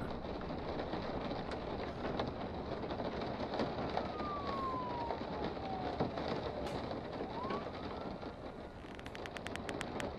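Steady background hiss with a faint siren wailing in the middle, its pitch falling slowly and then rising again. A rapid run of light clicks near the end.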